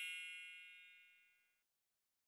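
The last ringing note of a bell-like chime in a music jingle, fading away and dying out about a second and a half in.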